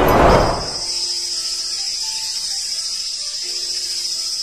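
A whoosh of a vehicle rushing past, fading within about half a second, then a steady high insect drone of summer ambience with a faint, soft melody underneath.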